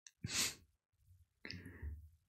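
Two quiet, breathy exhales from a man, the first just after the start and the second about a second and a half in.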